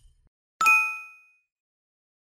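A single bright ding from a notification-bell sound effect, struck once about half a second in and fading away within about half a second.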